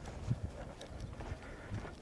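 Footsteps of two people walking on stone paving: a few irregular hard steps with short clicks.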